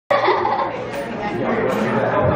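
Indistinct talking: voices, with no clear words.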